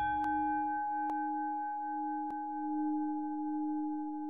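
A singing bowl struck once, ringing on as a steady low tone with a few higher overtones whose loudness slowly swells and fades.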